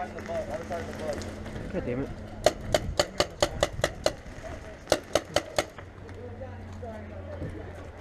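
Paintball markers firing in quick strings: about eight sharp shots at roughly five a second, then after a short pause a second burst of four.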